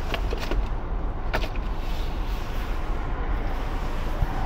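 Steady low rumble of background noise, with a few sharp clicks in the first second and a half.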